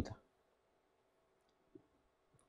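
Near silence with quiet room tone, after a man's speech trails off at the very start. One faint, short click comes near the end.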